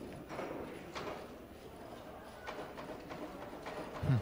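Pool shot: a cue strikes the cue ball and hard resin billiard balls click against each other and the cushions, with a ball dropping into a pocket. There are a few sharp, separate clicks spread about a second apart.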